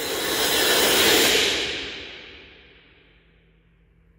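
Electronic white-noise swell from the show's soundtrack, played through a loudspeaker. It rises to a peak about a second in, then fades out over the next two seconds, its hiss growing duller as it dies away to near silence.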